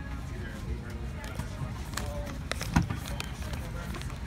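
Small items in a zippered toiletry pouch being handled, with scattered light clicks and rustles and one sharper knock about three quarters of the way in. Under it runs the steady low rumble of an airliner cabin, with faint voices in the background.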